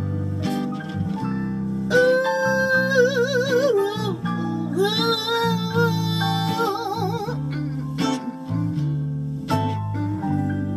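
A woman singing long, held notes with vibrato over a guitar accompaniment. The voice comes in about two seconds in and drops out after about seven and a half seconds, leaving the accompaniment.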